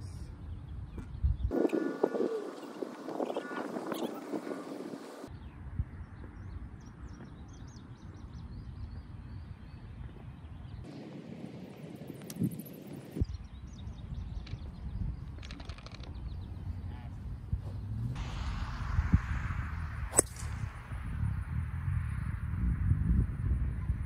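Wind rumbling on the microphone on an open golf course, with faint voices. A few sharp clicks stand out, from golf clubs striking the ball.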